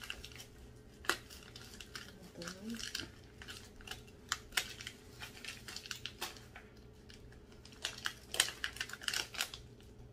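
Scissors snipping through plastic wrapping, with the plastic crinkling: a run of short, irregular clicks and rustles that come faster near the end.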